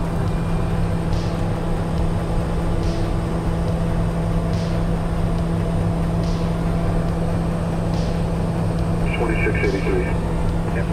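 Steady cockpit drone of the Piaggio Avanti P180's twin PT6 turboprops in cruise, a constant low hum over a rumble. A light tick repeats about every second and a half to two seconds, which the pilot takes for a relay clicking.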